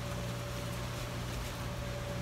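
A steady low mechanical hum with a faint, thin high tone held over it, like a machine running in the background.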